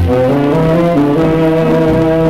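A 78 rpm shellac record of a dance-band orchestra playing an instrumental passage of held brass notes that move in steps. The uploader puts the record's sound down to a stylus too small for the groove, dragging along the groove bottom.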